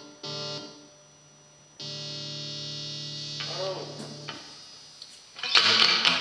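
Electric guitar played through a small Fender combo amp while its settings are adjusted. Short held chords start and stop abruptly, then a longer held chord rings from about two seconds in. Loud strumming starts near the end.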